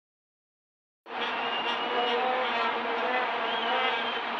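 Stadium crowd noise, with many vuvuzela horns droning and wavering together over the general din. It starts suddenly about a second in, after silence.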